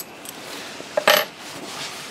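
A soft click, then one sharp metallic clink with a brief ring about a second in, as steel parts are handled in a milling machine vise.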